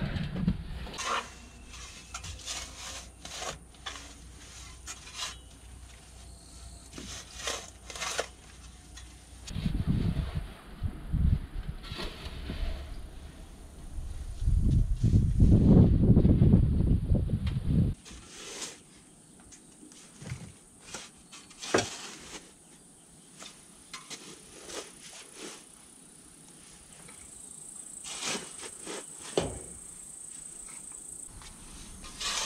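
Steel shovel digging a trench in soil: irregular scrapes and thuds as the blade cuts into and lifts earth. A loud low rumble comes in around ten seconds in and again from about fifteen to eighteen seconds, and the low background drops away suddenly at about eighteen seconds.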